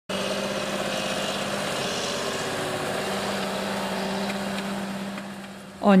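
John Deere tractor's diesel engine running steadily under load while pulling a disc cultivator through stubble: an even drone with a constant low hum, fading out near the end.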